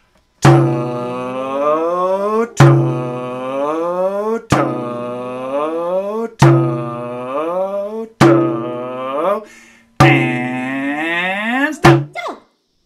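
A man's voice chanting the rhythm syllable 'to-o' six times, each a long held note of about two seconds, the length of a half note, with a sharp hit marking the start of each. One more short hit falls near the end.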